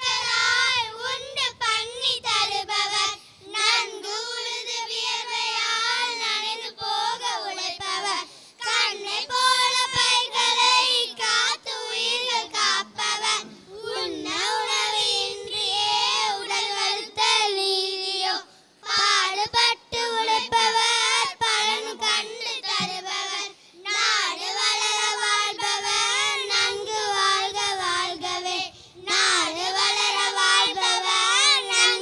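A group of children singing together into stage microphones, line after line with short breaths between phrases.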